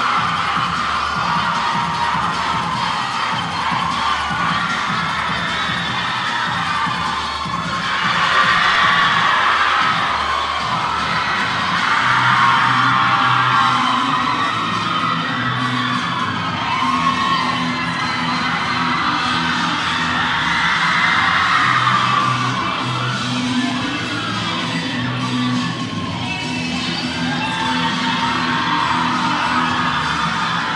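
Loud dance music with a repeating bass line, over an audience cheering and shouting throughout.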